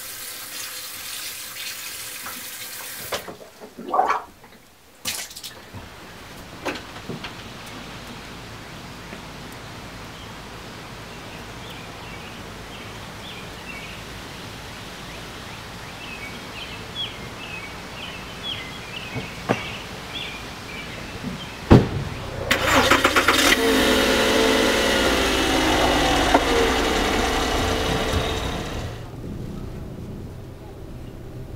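A car door shuts with one sharp knock. Then a Volkswagen Golf's engine cranks, starts and runs loudly with a wavering pitch for about six seconds before falling away near the end.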